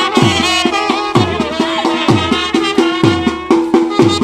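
Wedding band playing a folk tune live: clarinet and trumpets carry the melody over heavy dhol strokes, roughly one a second with lighter beats between.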